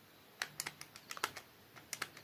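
Rubber keys of a Casio fx-991ES Plus scientific calculator being pressed, a quick run of small clicks starting about half a second in, with a couple more near the end.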